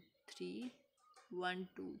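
Only speech: a woman's voice saying a few short, separate words with pauses between them.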